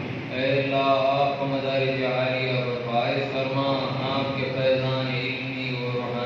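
A man's voice chanting a prayer recitation through a microphone and PA, in long, drawn-out melodic phrases.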